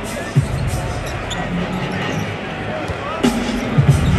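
Basketball bounced on a hardwood court, with sharp bounces about half a second in and twice near the end, over steady arena crowd noise and music.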